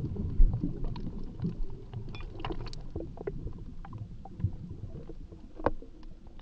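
Muffled underwater ambience: a low rumble with many scattered small clicks and bubble pops, slowly growing quieter, with one sharper click near the end.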